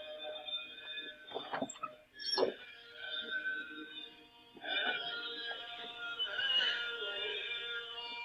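Droning electronic tones from an ITC audio app: several sustained pitches held together, with two quick sweeping swooshes about one and a half and two and a half seconds in.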